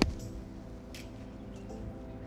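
A golf wedge striking down into bunker sand right at the start, blasting a plugged ball out of the bunker. Background music with steady held chords follows.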